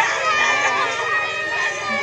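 A crowd of schoolgirls crying and wailing all at once, many high voices overlapping and wavering, mixed with pleading words.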